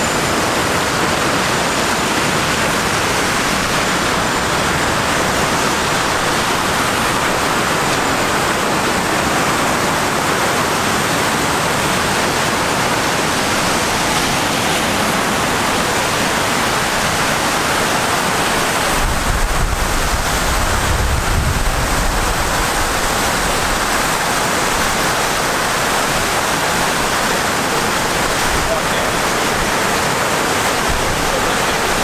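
Plaza fountain with a tall jet and water spilling over a long ledge into a pool: a steady, loud rush of falling and splashing water. A low rumble joins it for a few seconds past the middle.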